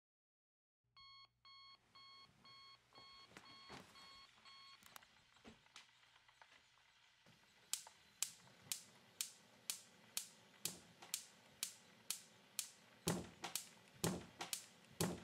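Electronic beeping at about two beeps a second, like a digital alarm clock, which stops about five seconds in. From about eight seconds, sharp clicks follow in a steady rhythm of about two a second, louder than the beeps.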